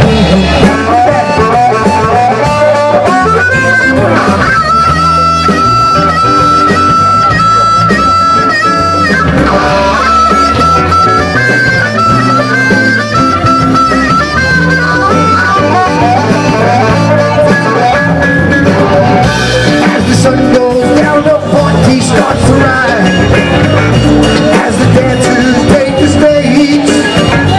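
Instrumental trop rock music: guitar, bass and drums under a lead line of long held notes that step up and down in pitch.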